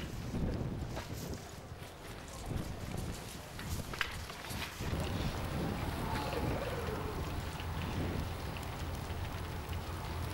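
Wind buffeting the camera microphone, a steady low rumble with gusts, and a single sharp tap about four seconds in.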